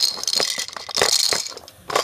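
Loud rattling and clattering close to the microphone in two spells about a second apart, with a shorter burst near the end, made by a baby's hands grabbing at things within reach.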